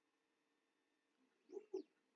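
Near silence: room tone with a faint steady hum, and two brief faint sounds near the end.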